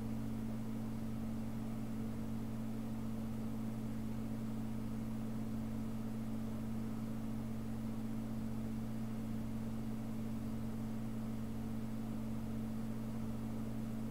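A steady low hum of background noise, with no other sound over it.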